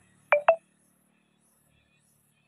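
A horn tapped twice in quick succession, two short loud beeps with the second slightly higher in pitch, over a faint low vehicle hum.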